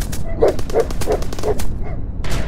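A dog barking about four times in quick succession over a rapid crackle of gunfire.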